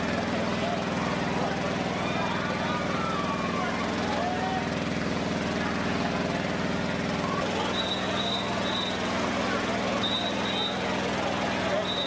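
Outdoor street sound: a steady low mechanical drone, like a running engine, under faint voices, with brief runs of short, high tones about eight and ten seconds in.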